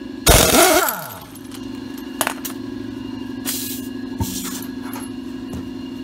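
Impact wrench spinning the lug nuts off a car's front wheel: a loud burst as it bites, then a steady buzzing hammer. Two sharp clicks come about two and four seconds in.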